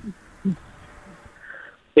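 A pause in a phone-in conversation: faint, steady telephone-line hiss, with a brief low vocal sound about half a second in.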